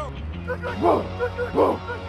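Two short barks, about a second in and again near the end, over background music with a steady bass line.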